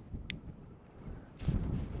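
Wind buffeting the microphone: a low rumble that swells into a stronger gust about a second and a half in. A brief, faint high squeak sounds near the start.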